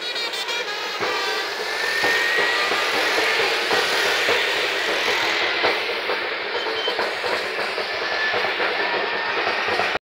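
Street procession noise: a crowd of marchers' voices and a drum over passing road traffic, with a faint rising whistle about two seconds in.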